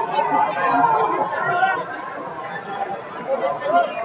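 Crowd chatter in a large arena: many voices talking at once, with no single voice standing out.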